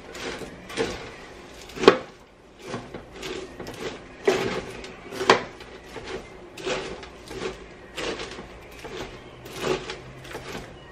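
A spoon stirring caramel-coated popcorn in a large roasting pan: irregular scraping and rustling, with a knock of the spoon against the pan every second or so, the loudest about two seconds in.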